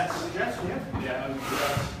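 Indistinct voices in the room between songs, with a brief hiss about one and a half seconds in.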